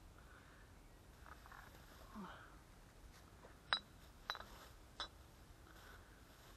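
Three sharp clicks or knocks, a little over half a second apart, the first the loudest, against a quiet background.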